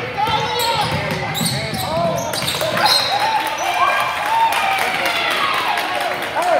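Basketball game in a gym: a ball dribbling on the hardwood floor, sneakers squeaking in many short chirps as players run, and voices from players and spectators.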